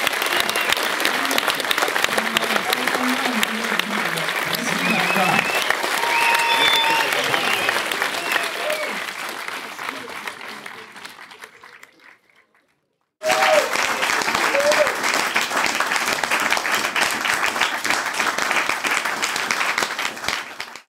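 Audience applauding, with voices calling out over the clapping at first. The applause fades out about twelve seconds in, and after a second of silence a second stretch of applause starts abruptly.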